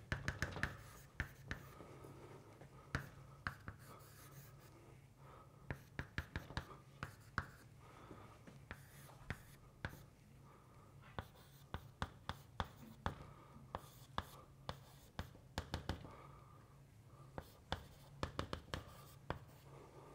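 Chalk writing on a blackboard: quick clusters of sharp taps and short scratches as symbols are written, with brief pauses between them. A low steady hum runs underneath.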